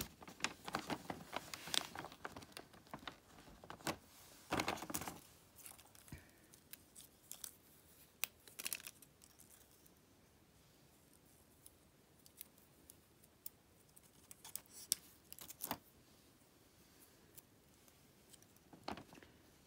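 Faint, irregular clicks and rustles of fingers and fingernails sticking small plastic gem stickers onto a wooden lolly stick, busiest in the first few seconds and again in short bursts later.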